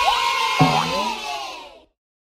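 A short celebration sound effect: children cheering and whooping over bright music, fading out just before two seconds in.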